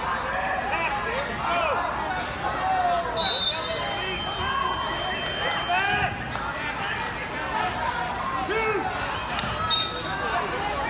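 Many overlapping voices of spectators calling out and talking across a large, echoing tournament hall, with two short high-pitched tones, one about three seconds in and one near the end.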